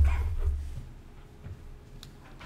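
A heavy low thud on a desk microphone at the start, trailing off as a rumble over the next second, then quieter handling noise. These are the knocks of people moving at the desk as one presenter gets up and another sits down.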